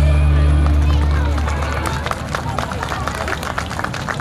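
Stage music ends on a held low chord that fades out over the first two seconds. An audience then applauds, with voices mixed in.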